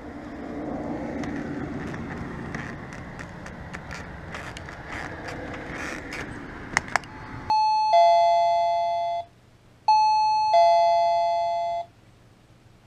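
Wireless self-powered doorbell's plug-in receiver chiming a two-note ding-dong, a higher note then a lower one, each fading slowly, twice in a row. Before it there is steady outdoor background noise and a couple of sharp clicks as the kinetic push-button transmitter is pressed.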